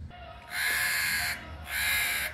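A crow cawing twice: two caws of under a second each, with a short gap between.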